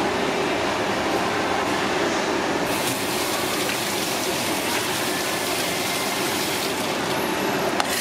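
Tap water running steadily into a stainless-steel sink and splashing over hands as they rinse sea snail meat, turning hissier about three seconds in. A faint steady hum runs underneath.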